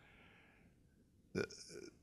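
A man's faint breath during a pause in speech, then a short word ("The") about a second and a half in.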